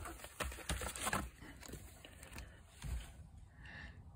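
Faint handling noise from a vinyl LP jacket being turned over: a few light taps and rustles in the first second or so, and another soft one near the end.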